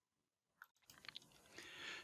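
Near silence: room tone, with a few faint clicks about a second in and a faint hiss rising near the end.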